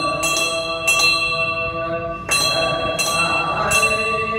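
Temple bell rung again and again at an uneven pace, each metallic strike ringing on into the next.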